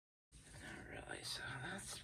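Complete silence at first, then about a third of a second in a woman's quiet, indistinct speech starts.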